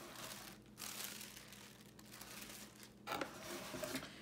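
Crinkling and rustling of paper and clear plastic packaging being handled.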